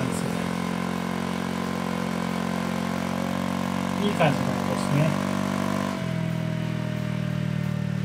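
Honda ADV scooter's single-cylinder engine idling steadily through a BEAMS R-EVO2 stainless silencer, a low even exhaust note. The note shifts slightly about six seconds in.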